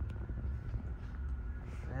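Low, uneven background rumble with no distinct event in it.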